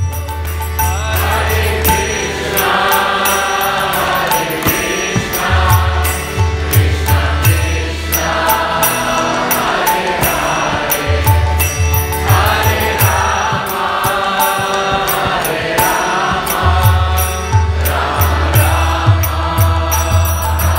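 Kirtan: devotional mantra chanting sung over a harmonium's sustained chords, with a steady percussion beat throughout. A deep bass comes in and drops out in phrases of a few seconds each.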